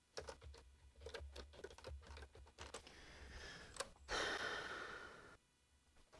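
Faint computer-keyboard typing, a quick run of keystrokes entering a file name for about four seconds. This is followed by a louder breathy burst of noise lasting about a second and a half, which cuts off suddenly.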